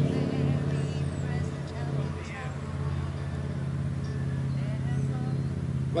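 A faint, distant man's voice speaking in short snatches over a steady low drone.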